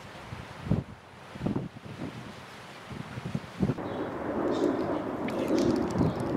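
Wind buffeting the microphone in low, rumbling gusts, changing about four seconds in to a steadier, louder rush of outdoor wind noise.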